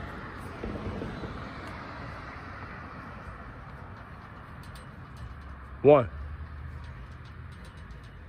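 Outdoor street background: an even rushing noise of passing road traffic that slowly fades over the first few seconds.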